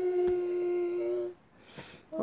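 A woman's voice humming one long, steady note of a slow worship song; it breaks off about two-thirds of the way through, and a short breath is drawn near the end.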